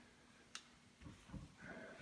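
Near silence: garage room tone, with a single faint click about half a second in and faint handling noise later on.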